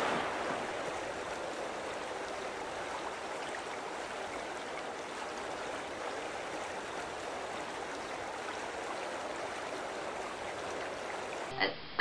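Steady rushing noise of sea water, easing off slightly over the first seconds and then holding even, until it cuts off just before the end.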